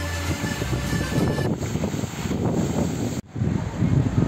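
Wind buffeting the microphone, with the splashing of a fountain beneath it. About three seconds in the sound drops out for a moment, then comes back as a louder wind rumble.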